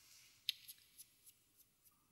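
Near silence with about three faint, short clicks in the first second, from hand movements while holding and starting to use an eyebrow pencil.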